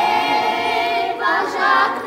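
A group of voices singing together, unaccompanied, with several voices at different pitches.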